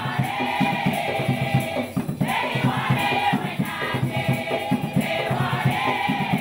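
Women's choir singing together, with a short break in the phrase about two seconds in. Hand drums keep a quick, steady beat underneath.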